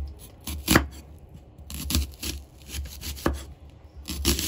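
A kitchen knife slicing through a raw onion and knocking on a wooden cutting board, in a few separate, irregular strokes.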